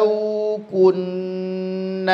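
A man's voice reciting the Quran in a chanted tajwid style, holding long drawn-out vowels on a steady pitch: one held note, a brief break, then a second long held note.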